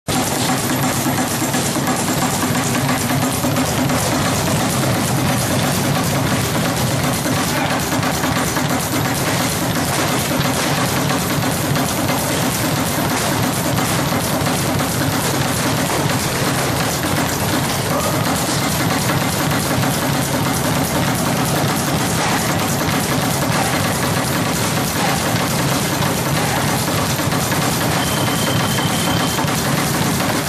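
Leather speed bag rattling against its wooden rebound platform under rapid, continuous punching, a fast, even drumming of hits that runs without a break.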